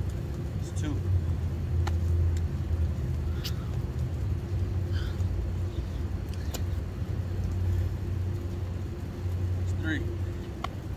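A steady low mechanical hum runs throughout. Over it come a few sharp taps and short breaths from a man doing push-up burpees on stone pavers.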